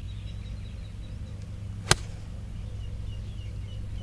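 A single crisp strike of a 9-iron on a golf ball, about two seconds in, over a steady low rumble.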